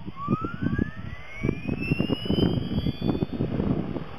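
Radio-controlled model helicopter spooling up for take-off: a whine that rises steadily in pitch over the first three seconds or so as the rotor speeds up. Gusty wind buffets the microphone.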